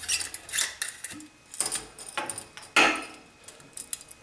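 Handling noise from an aluminium canteen as its threaded cap is unscrewed and the canteen is stood on a stone counter: a series of separate clicks and knocks, the loudest about three seconds in.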